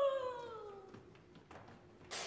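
A soprano's sustained sung note sagging downward in pitch and fading out within about a second, the mechanical doll's voice running down as her clockwork winds down; then only faint small clicks.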